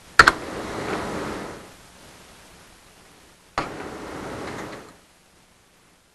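Sharp computer keyboard clicks during code editing: a quick double click near the start and a single click about three and a half seconds in. Each is followed by about a second of room hiss.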